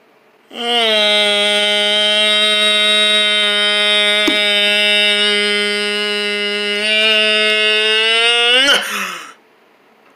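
A single voice holding one long, loud note at a steady pitch for about eight seconds, then sliding down in pitch and breaking off.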